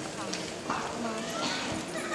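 Low murmur of audience voices with scattered footsteps on the stage floor as choir members shift places between songs.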